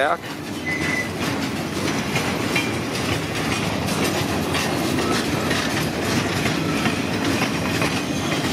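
Empty freight train of stake-post log flatcars rolling past close by: a steady rumble of steel wheels with a continual clickety-clack over the rail joints. A brief high squeal comes a little under a second in.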